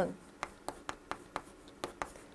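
Chalk writing on a green chalkboard: a quick series of about six short, sharp ticks and scratches as chalk strokes hit the board.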